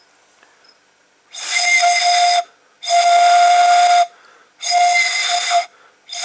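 A single plastic drinking straw played as a pan pipe, blown across its open top while the other end is stopped with a finger: three breathy whistling notes at one steady pitch, the second the longest, the sound of the straw's air column resonating.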